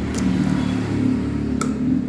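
Two sharp metallic clicks from the key and locking fuel-tank cap of a motorcycle, one just after the start and one near the end. They sound over a steady low mechanical hum.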